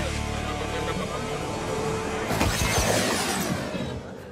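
Background fight music with steady held notes, then about two and a half seconds in a shattering crash sound effect that rings out and fades as the defeated Z-Putties break apart and vanish.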